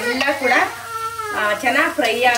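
Vegetables sizzling as they fry in a large aluminium pot, stirred with a metal ladle that scrapes against the pot's sides.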